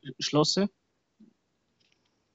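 A man speaking German, stopping after well under a second, then silence.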